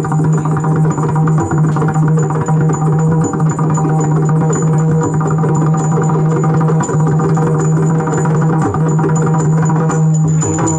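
Yakshagana instrumental accompaniment without singing: rapid maddale drum strokes over a steady held drone, with small hand cymbals keeping time and ringing.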